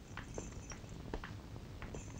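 Soft, irregular taps of footsteps on a hard floor, about half a dozen, over a low steady hum.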